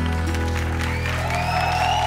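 The band's final chord ringing out on acoustic guitars and bass, held steady, with applause and a few rising calls from the audience starting about halfway through.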